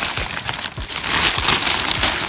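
Brown paper grocery bag crinkling and rustling as hands dig through it, loud and uneven, swelling and easing on and off.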